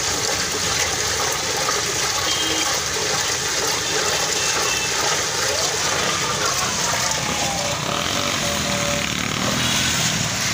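Ice and milk drink churning and sloshing steadily as a long steel ladle stirs them round a large steel pot, over continuous street noise.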